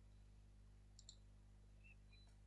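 Near silence: faint steady low hum, with two tiny high clicks about halfway through.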